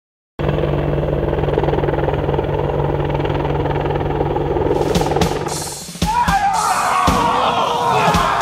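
Helicopter rotor and engine running steadily with fast, even blade chop, fading out about five and a half seconds in. It is cut off by a loud burst of many voices yelling, with sharp hits.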